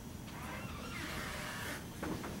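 Dry-erase marker drawing on a whiteboard: a soft scratchy stroke lasting about a second and a half, over a low room hum.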